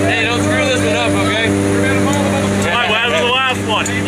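A steady low drone with a voice over it.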